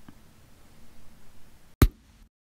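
Faint room noise, then near the end a single short, loud kick-drum hit: a kick sample just recorded into the Koala Sampler app, played back from its pad. It is heard as a solid kick.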